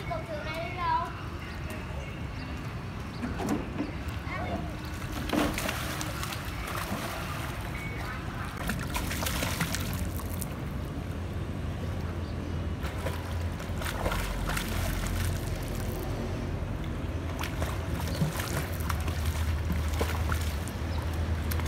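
A small child splashing and paddling in a swimming pool: water sloshing and splashing in irregular bursts over a steady low rumble. A high child's voice calls out briefly at the very start.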